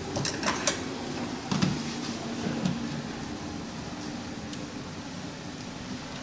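Light handling sounds as wires and a screwdriver are worked at a magnetic contactor: a few quick clicks in the first second and another around a second and a half in, over a steady low background hum.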